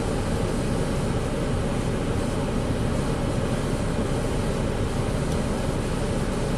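Steady rumbling noise with no distinct events, heaviest in the low end.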